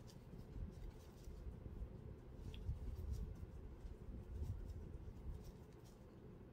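Faint rustling and light ticks of a metal crochet hook drawing yarn through stitches along a fleece blanket's edge, over a low rumble.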